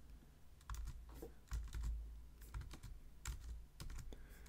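Faint, irregular clicks and taps of a computer keyboard and mouse, a dozen or so scattered through a few seconds.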